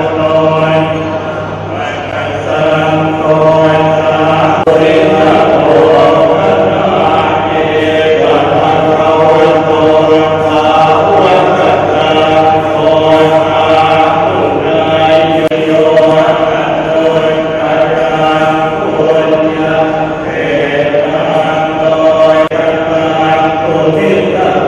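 Buddhist monks chanting in unison, many voices holding a steady, drawn-out recitation tone.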